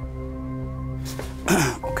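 Background music of steady held tones, broken about a second and a half in by a short, loud laugh.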